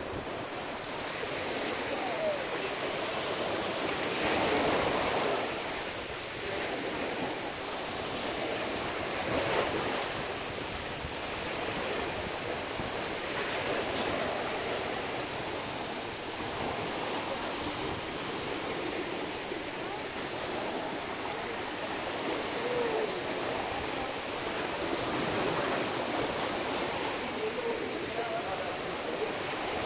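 Small ocean waves breaking and washing up a sandy beach, the surf swelling and easing every few seconds.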